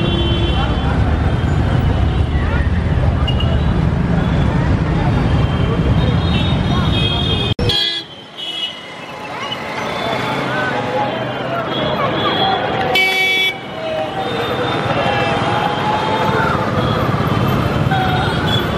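Busy street noise: traffic and people talking, with vehicle horns honking. There is a sudden break in the sound about eight seconds in, and a short horn blast comes about five seconds later.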